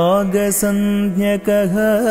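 Sung Sanskrit verse accompanying a Kuchipudi dance: a solo voice holding long notes with small wavering ornaments, with a short break about one and a half seconds in.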